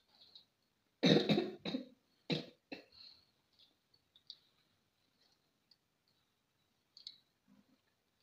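A person coughing: one long cough about a second in and two short ones soon after, followed by small clicks and taps of hands and food on glass plates.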